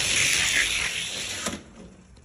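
Two Hot Wheels die-cast cars rolling fast side by side down a two-lane gravity drag track, their small wheels giving a steady rushing whirr. The whirr stops about one and a half seconds in as the run ends.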